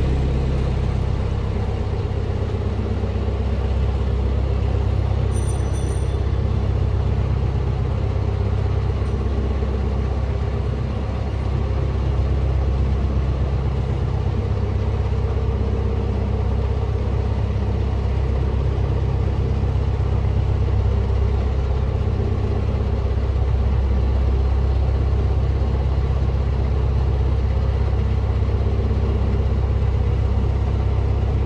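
Narrowboat's inboard diesel engine running steadily at a slow cruising pace, a constant low rumble. A brief high-pitched sound cuts in about five seconds in.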